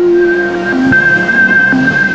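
Logo sting music for a news channel's intro: a held high synthesized tone with a couple of short lower notes over a swelling whoosh.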